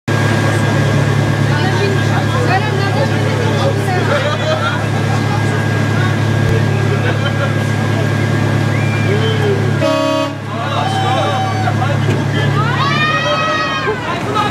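Roller coaster station at a fairground: a steady low machine hum under voices, with a short horn toot about ten seconds in as the train is about to depart. Near the end a pitched sound rises and then holds.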